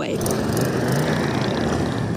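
A group of touring motorcycles riding past one after another, their engines running steadily, with one bike passing close.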